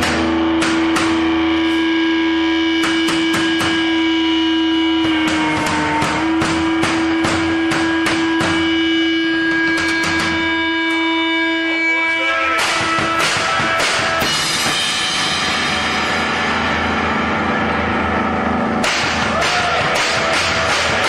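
Live rock music from a two-piece band: a long held note rings for the first dozen or so seconds over scattered drum and cymbal hits, then the playing grows denser.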